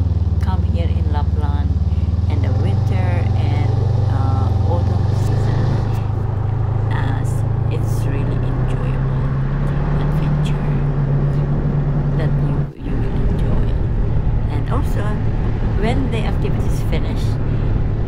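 Snowmobile engine running under way, a steady low drone that climbs slowly in pitch through the middle as the machine speeds up, cutting out for an instant about two-thirds through before carrying on steadily.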